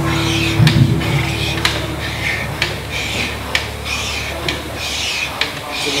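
Rowing machine worked hard and fast: a whoosh on each stroke with a sharp click, about one stroke a second.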